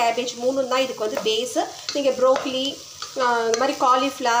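Spatula stirring chopped vegetables frying in a non-stick pan: quick, repeated scraping strokes over a sizzle, with a brief lull about three seconds in.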